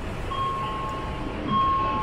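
Electronic warning tone in a metro train, a steady high beep sounding in long pulses of under a second with short gaps, over a low carriage rumble.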